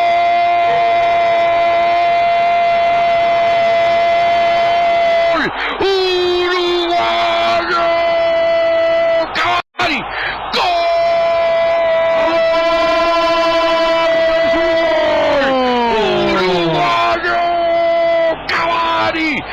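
Radio football commentator's long, sustained goal shout, one high pitch held for several seconds at a time. It breaks off briefly about five seconds in and again near the middle, then slides down in pitch near the end.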